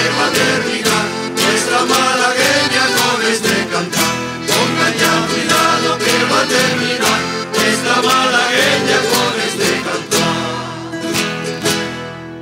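Canarian folk string band playing a dance tune on strummed guitars and other plucked strings, in a steady strummed rhythm. Near the end the tune closes on a final chord that rings away.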